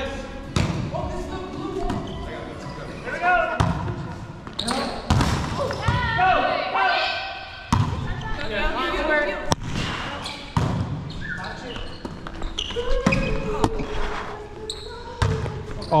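Volleyball rally in a gymnasium: about eight sharp slaps of the ball being hit and landing on the hardwood court, echoing in the hall. Players shout and call between the hits.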